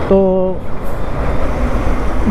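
Bajaj CT 125X motorcycle under way in slow traffic, heard from the rider's onboard camera: a steady rumble of wind, engine and road noise.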